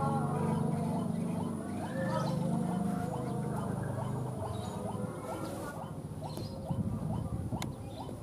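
A rapid, regular series of short chirping animal calls, about two or three a second, over a low background hum, with a few sharper clicks near the end.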